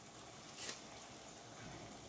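Faint simmer of water around pork pieces in a frying pan, with one brief soft sound a little over half a second in as bay leaves are dropped into the liquid.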